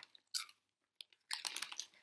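Doritos tortilla chips being bitten and crunched in the mouth: one crunch about a third of a second in, then a quick run of crunches in the second half.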